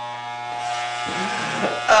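Electric hair clippers running with a steady buzz, shaving a strip down the middle of a man's head.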